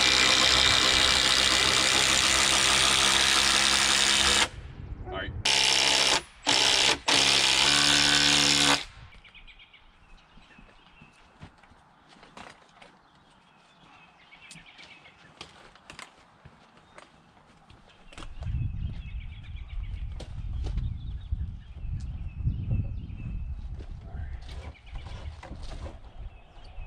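Cordless drill/driver driving a fastener into the top of a timber deck post: one long run of about four seconds, then three shorter bursts that end about nine seconds in. After that come faint knocks and, in the last third, a low rumble.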